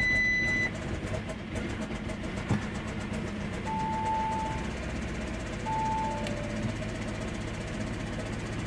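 2017 Audi A4 engine running roughly at idle in park, running really bad as if some cylinders are not working, with a sensor reference voltage fault (P0641) stored. Dashboard warning chimes sound over it: a short high beep at the start, then two lower chimes about halfway through.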